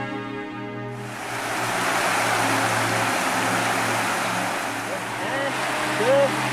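River water rushing over rocks, starting about a second in, under background music.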